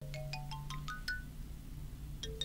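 A short bell-like jingle: a quick run of chiming notes climbing steadily in pitch through the first second, then a few more scattered notes, over a steady low hum.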